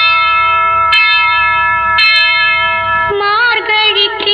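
Film song music: sustained held chords, each struck afresh about once a second, then a singing voice with a wavering pitch comes in about three seconds in.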